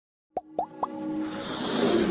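Animated-logo intro sound effects: three quick pops, each higher in pitch than the last and about a quarter second apart, then a swelling whoosh over a held synth tone.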